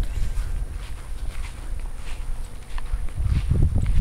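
Footsteps on grass with a continuous low rumble of wind and handling on a handheld camera's microphone, growing stronger near the end.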